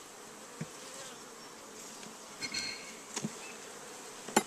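Honey bees buzzing steadily around an open hive, with a few soft knocks.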